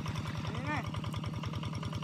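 A small engine running steadily at idle-like speed, a rapid, even throb that does not change.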